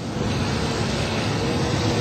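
Steady rushing background noise, even and unbroken.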